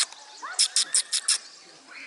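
A quick run of five short, high, rasping chirps from a small animal, starting about half a second in, with a faint rising whistle just before them.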